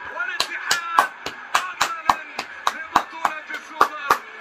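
Fireworks going off in a rapid, fairly even series of sharp bangs, about three or four a second.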